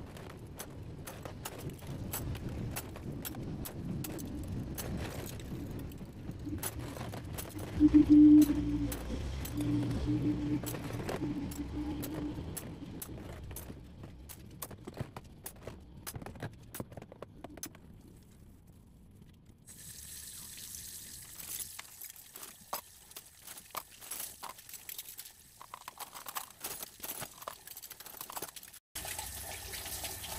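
Dishes and cutlery being hand-washed in a plastic basin of water: water sloshing and metal utensils clinking. About eight seconds in there is a brief louder hum. From about two-thirds of the way through, a tap runs steadily while cutlery clinks under it.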